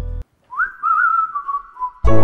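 A single whistled tone that glides up, wavers, and drifts slowly down over about a second and a half. Before it, the background music cuts off; at the very end, loud theme music starts.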